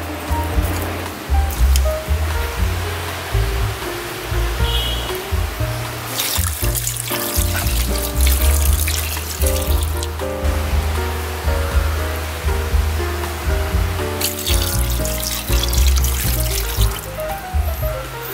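Background music with a steady bass line, over cold water being poured into an electric pressure cooker's pot of beef bones and meat. The pouring rushes loudest about six seconds in and again near the end.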